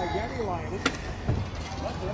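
Wind rumbling on the microphone, with faint talk in the background and a single sharp click a little under a second in.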